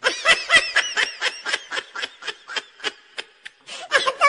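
Children laughing and giggling in quick repeated bursts.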